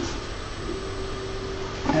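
Creality Halot R6 resin printer's Z-axis stepper motor starting about two-thirds of a second in and running with a steady whine as it raises the build plate.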